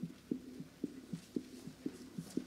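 A low, muffled rhythmic thumping: a double beat repeating steadily about twice a second.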